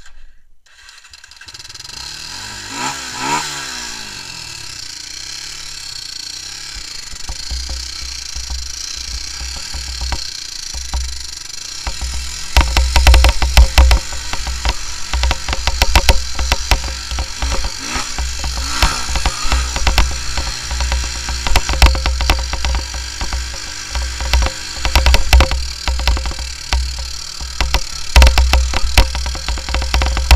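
Honda 300EX quad's single-cylinder engine running and being revved, rising and falling in pitch a few seconds in, then pulling along a dirt trail. From about twelve seconds in, heavy wind buffeting and jolts on the handlebar-mounted microphone cover much of it.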